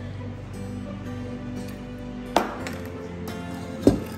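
Two sharp metal clinks about a second and a half apart, a stainless ladle knocking against a stainless steel saucepan while stirring, over steady background music.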